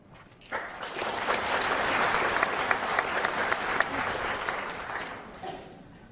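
Theatre audience applauding, starting about half a second in, holding steady, then fading away near the end.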